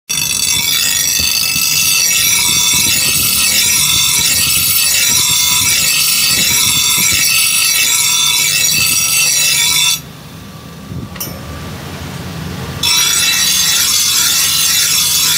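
Motor-driven grinding wheel grinding the edge of a steel cleaver: a loud, harsh metal-on-abrasive grinding with a pulsing rhythm. About ten seconds in, the grinding drops away for roughly three seconds, leaving a lower hum, then resumes.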